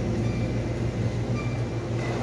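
Steady low hum of a supermarket's refrigerated display cases and store ventilation, unchanging throughout.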